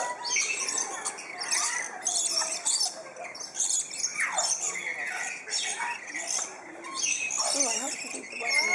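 A flock of lorikeets screeching, with harsh, shrill calls repeating about once a second as they crowd around a hand-held feeding cup. Indistinct human voices sound underneath.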